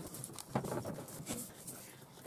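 Felt-tip marker writing letters on a sheet of lined paper, a run of short, irregular soft scratching strokes.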